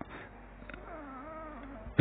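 A faint, drawn-out cry that wavers in pitch, starting about half a second in and lasting over a second, over low room noise.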